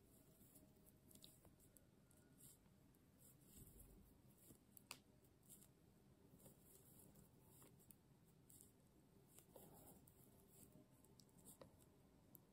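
Near silence with faint, irregular clicks of metal knitting needles as the last stitches of a shoulder are bound off.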